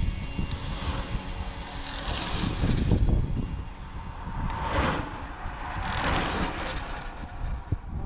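Vehicles passing on the road, their tyre and engine noise swelling and fading twice, over wind rumbling on the microphone.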